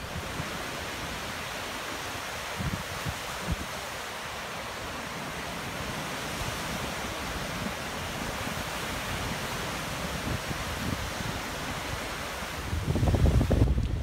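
Small waves breaking and washing on a sandy beach, a steady hiss of surf, with wind rumbling on the microphone that grows stronger near the end.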